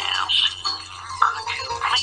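High-pitched voices chattering too fast and garbled to make out words, over faint background music, with a steady low hum underneath.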